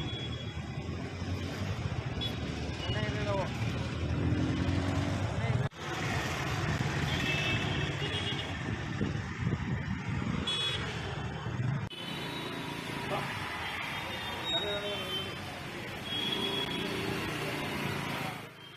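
Outdoor street background: road traffic running with indistinct voices. The sound changes abruptly twice, where the footage is cut.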